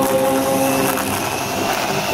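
A youth church choir holding a long sustained chord, several voices on steady pitches without syllable changes.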